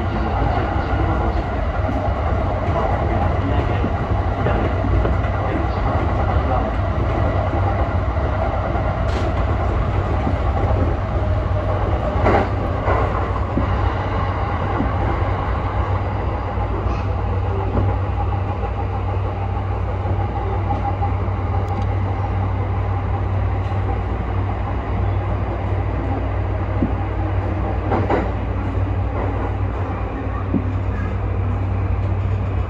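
E235-1000 series electric commuter train running, heard inside the leading car: a steady rumble of wheels on rail with a few sharp clicks of wheels passing over rail joints, the loudest about twelve seconds in.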